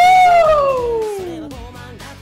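A man's loud, excited yell, shooting up in pitch and then sliding slowly down over about a second and a half, over the song playing in the background.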